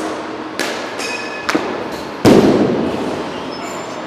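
Batting practice in an indoor cage: a few sharp knocks of bat on baseball and of balls striking the screen and netting. The loudest and heaviest impact comes about two and a quarter seconds in and echoes away over about a second. A short ringing tone sounds around a second in.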